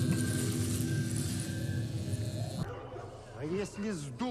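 Episode soundtrack: ominous music with a steady hiss over low sustained tones, which cuts off sharply about two and a half seconds in; a man's voice then starts speaking near the end.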